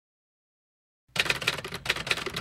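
Typewriter keystroke sound effect: a quick, irregular run of clacking strikes that starts about a second in.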